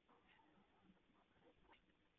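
Near silence: faint room tone with a few soft, brief sounds.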